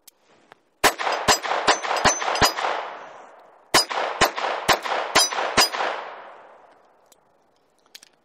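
Ruger LCP II .22 LR pocket pistol fired in two strings of five shots, about two shots a second, each string followed by a long echo dying away.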